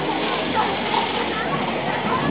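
Street ambience: indistinct voices of passers-by over a steady background noise.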